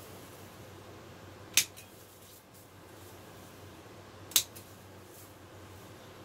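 Pruning snips cutting side branches from a cannabis plant's green stems: two sharp snips, the first about a second and a half in, the second nearly three seconds later.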